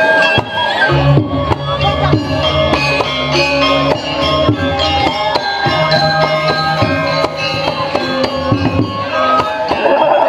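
Balinese gamelan playing a fast, busy piece: metallic tuned percussion ringing quick stepped melodies over steady drum and percussion strokes. Deep low notes join about a second in and continue underneath.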